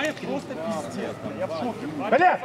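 Indistinct men's voices calling out during a football match, with no clear words.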